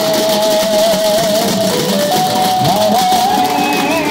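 A troupe of large stick-beaten frame drums (dappu) playing a fast, dense rhythm under a sustained, slightly wavering melody line that steps up in pitch about halfway through.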